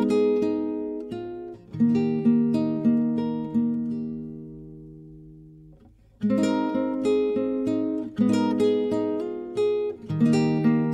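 Gentle anime soundtrack music on acoustic guitar: plucked notes and strummed chords that ring out. About four seconds in, a chord is left to fade almost to silence, and playing resumes a little after six seconds.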